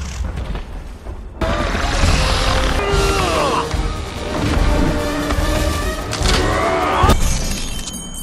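Dramatic film score mixed with crashing and booming sound effects, with sudden loud hits about a second and a half in and again near the end.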